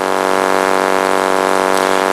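A loud, steady hum at one unchanging pitch with many overtones.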